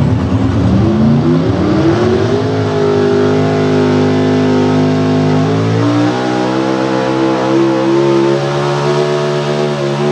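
Outlaw 4x4 pulling truck's unlimited-cubic-inch engine running at full throttle as it drags a weight-transfer sled. The revs climb over the first two seconds, hold steady, then settle into a new pitch about six seconds in and keep running hard.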